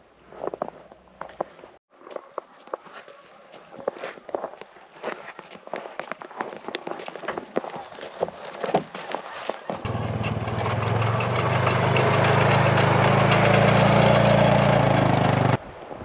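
Footsteps in thin snow with scattered clicks and rustles, then, about ten seconds in, a side-by-side utility vehicle's engine running loud and steady with wind noise for about six seconds before cutting off abruptly.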